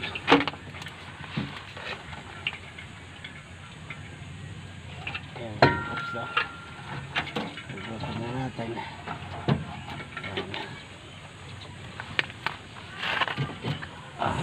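Rusted steel exhaust pipe and muffler being worked loose from under a jeep: scattered metal knocks and clinks, with one ringing clang a little over five seconds in. Indistinct voices can be heard now and then.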